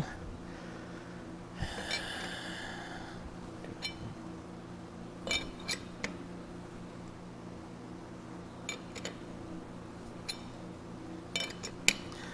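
Quiet, scattered metallic clicks and clinks of a T-handle chuck key being fitted and turned in the jaw screws of a lathe's four-jaw chuck while the work is dialled in. Underneath is a steady low hum, with a short hiss about two seconds in.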